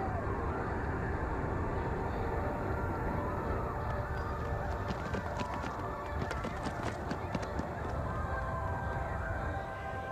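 Collapse of a World Trade Center tower as caught on a street camcorder: a dense, steady low rumble of noise with scattered sharp crackles in the middle, easing slightly near the end.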